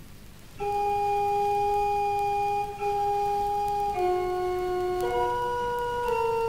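Hildebrandt pipe organ at Störmthal begins playing about half a second in, with long held notes in a clear, plain tone that change about once a second. A vinyl record's surface hiss is heard before the music starts.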